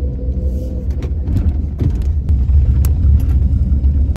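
Steady low rumble of a car's engine and tyres heard from inside the cabin while driving slowly, with a few faint clicks and knocks.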